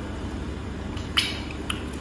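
A short slurp a little after a second in as stew gravy is sipped from a wooden spoon, followed by a faint mouth click, over a steady low hum.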